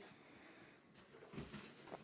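Near silence: room tone, with a faint low murmur near the middle.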